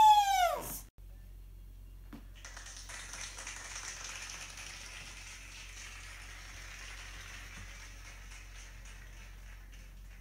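The end of a high whining wail that falls in pitch and cuts off within the first second. Then a faint, steady hiss of room noise.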